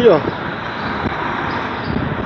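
Steady road traffic noise around parked and passing vehicles, after a single short spoken word at the start.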